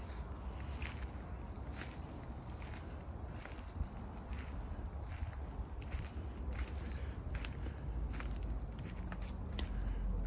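Footsteps crunching on wood-chip mulch at a steady walking pace, about three steps every two seconds, over a steady low rumble.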